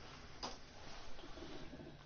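A single faint click about half a second in, over quiet room tone.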